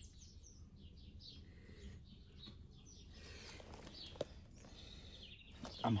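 Small birds chirping repeatedly in short high notes over a faint steady outdoor background noise, with a single sharp click a little after four seconds in.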